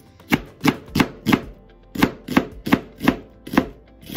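Kitchen knife chopping vegetables on a cutting board: about ten quick strokes at roughly three a second, with a brief pause in the middle.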